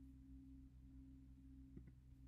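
Near silence: a steady low electrical hum, with a faint pair of computer mouse clicks, press and release, near the end.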